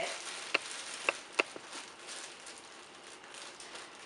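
A clear plastic bag crinkling and rustling as it is handled and unwrapped. There are a few sharp crackles in the first second and a half, and it grows softer toward the end.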